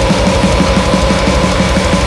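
Instrumental death metal passage: fast, dense drumming under distorted guitars, with one high note held over it that stops near the end.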